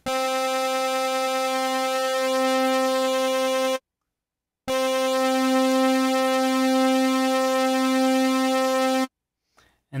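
Korg Kronos synthesizer holding one bright, buzzy note, really loud, played through a BI Chorus insert effect whose delay and LFO depth are being adjusted. The note sounds twice, about four seconds each, with a short silent gap just under four seconds in.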